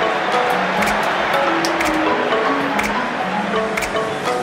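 Background music: a melody of short held notes stepping up and down over regular percussion hits.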